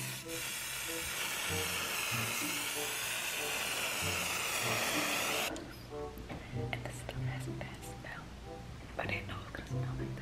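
Aerosol can of pink temporary hair colour spray hissing in one continuous spray, stopping suddenly about five and a half seconds in.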